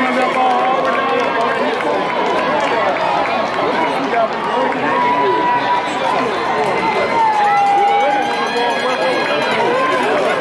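Crowd noise from a football sideline and stands: many voices talking and shouting over one another. Twice in the second half, a voice holds one long, drawn-out call.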